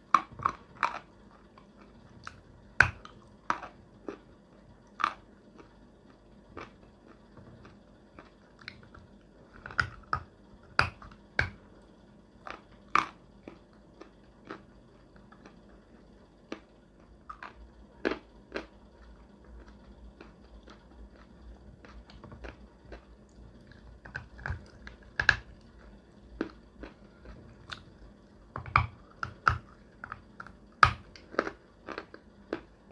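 Close-miked biting and chewing of a chunk of edible clay: sharp, crisp crunches come in scattered clusters, with quieter chewing in between.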